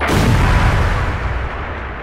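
Explosion sound effect: one sudden blast that dies away over about two and a half seconds.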